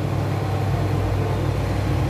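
A steady, low machine hum, unchanging throughout, with no other distinct sound.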